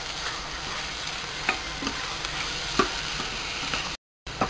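Chopped onion, tomato and spices sautéing in hot oil in a pressure cooker: a steady sizzle, with a metal ladle scraping and clinking against the pot several times as the mix is stirred.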